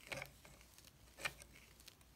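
Faint handling noises from a nutcracker figure's velvet cape being pushed aside by hand: two soft, brief rustles, one just after the start and one a little past a second in.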